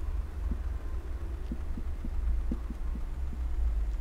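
A steady low hum with a few faint, soft ticks scattered through it.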